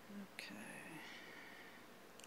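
A faint whisper, lasting about a second and a half and fading out.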